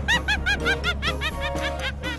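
A rapid, even run of short high chirping calls, about seven a second, thinning out in the second half, over background music.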